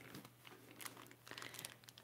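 Faint crinkling and light clicks of foil Pokémon Ancient Origins booster pack wrappers as a stack of packs is flipped through by hand.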